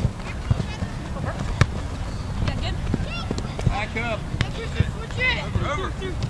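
Shouts from youth soccer players and sideline spectators on an open field, a few short calls at a time, over a steady low rumble, with a few sharp thuds.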